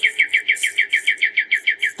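A rapid, evenly spaced trill of short, high chirps, about nine a second, each note sliding down slightly, bird-like in character.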